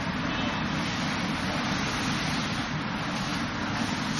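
Steady background noise, a constant low hum with hiss over it. No distinct knocks stand out.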